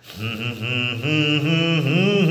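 A man singing a slow melody solo, with no accompaniment. He comes in just after a brief pause and glides and steps between held notes.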